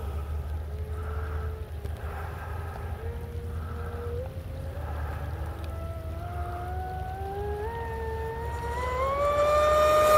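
Electric RC speedboat (Deltaforce 35) with its brushless motor whining as the throttle is fed in, the pitch climbing in steps and growing louder near the end as the boat speeds up and comes closer. A steady low rumble runs underneath.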